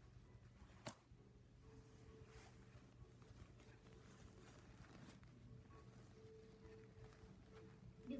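Near silence: a faint steady hum with one sharp click about a second in.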